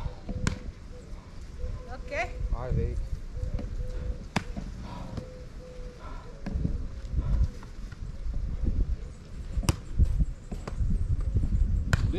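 A volleyball being struck by hand: three sharp slaps a few seconds apart, over a low rumble of wind on the microphone.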